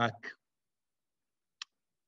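A man's word trailing off at the very start, then silence broken by one short, sharp click about one and a half seconds in, as the shared document is scrolled on the computer.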